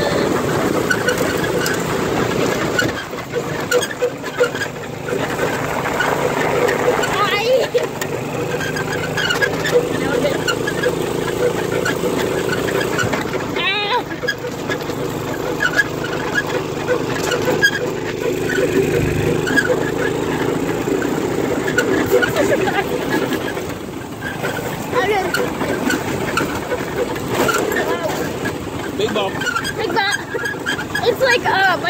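Go-kart's engine running steadily under way across bumpy grass, with rattling and knocking from the kart's frame. The engine eases off briefly twice.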